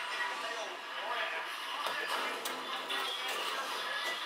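A television playing in the room: a voice talking over background music.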